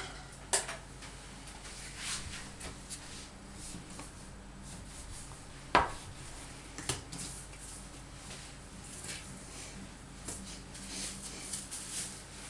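Hands dividing a block of pastry dough on an oilcloth-covered table: scattered soft rustles and small clicks, with one sharp knock about six seconds in and more rustling near the end.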